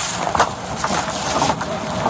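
Rough, noisy field audio of a recorded video clip: a steady wash of wind-like noise with scattered knocks and rustles of people moving about.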